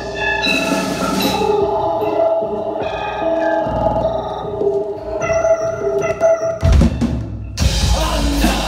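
Live dark trap/goth band music without vocals: a melodic instrumental line of held notes over drums, with heavy low hits about seven seconds in and the full band coming in loudly just before the end.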